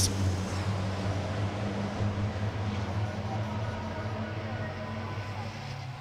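A pack of racing trucks' diesel engines accelerating away from a race start, a steady deep drone that gradually fades.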